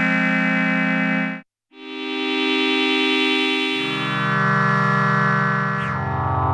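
Behringer Pro-800 analog eight-voice polyphonic synthesizer playing held chords while stepping through its preset programs. The first patch's chord cuts off sharply about a second and a half in. After a short silence a new patch swells in slowly, and a lower note joins about four seconds in.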